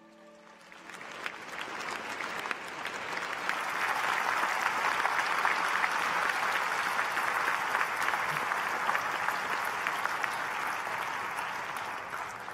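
Large audience applauding: the clapping swells over the first few seconds and then holds steady.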